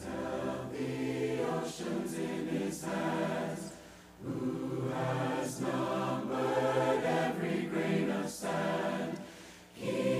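Choir singing a slow song in sustained phrases, with breaks about four seconds in and again near the end.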